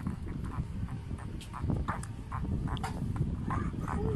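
Shih Tzu–Chihuahua mix puppies chewing and licking a hand right at the microphone: many short, irregular little mouth sounds and puppy noises over the low rumble of handling.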